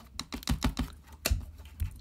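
Irregular light clicks and taps of a nail file knocking against a door's metal threshold strip and the tiled floor as a cat paws at it from under the door, several a second, with a sharper knock about halfway through and another near the end.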